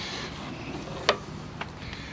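Low steady background noise from a handheld camera being moved, with one sharp click about a second in and a fainter one soon after.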